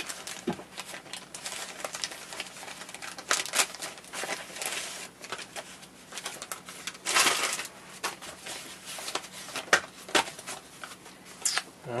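Plastic mailer bag and foam wrapping crinkling and rustling as a small parcel is unwrapped by hand, with scattered small clicks and a louder rustle about seven seconds in.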